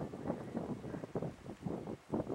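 Uneven, gusty wind noise buffeting the camera's microphone.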